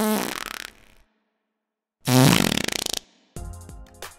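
Two fart sound effects, each about a second long, separated by a second of silence; the second is louder. Background music resumes near the end.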